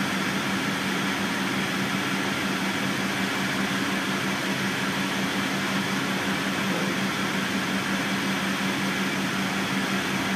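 Steady hum inside the cabin of a 2006 MCI D4500CL coach standing almost still: the diesel engine idling under a steady low drone, with the air conditioning blowing.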